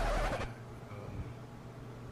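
A man's drawn-out "um" trails off, then a pause with only a faint, steady low hum under light hiss.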